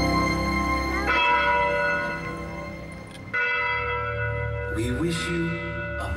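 Bells ringing in the show's music over the loudspeakers: a sustained ringing chord, with new strikes at about one second and three seconds in that each ring on. A voice comes in briefly near the end.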